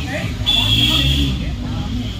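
Indistinct voices of a seated audience of children, talking among themselves, with a low, steady, louder stretch through the middle.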